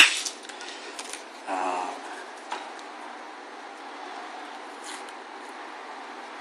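Quiet handling of a rubber-overmolded rifle stock: faint rubbing and light ticks. There is a short pitched sound about a second and a half in.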